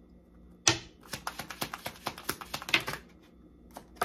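A deck of tarot cards being shuffled by hand: a sharp snap, then a quick run of card clicks for about two seconds.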